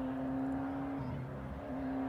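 A motor vehicle's engine running at steady, fairly high revs, its pitch holding level with a small dip about halfway through.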